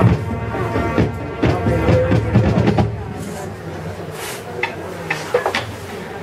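Marching band playing, with brass chords and drum strikes, stopping about halfway through; after that it is quieter, with a few scattered sharp sounds.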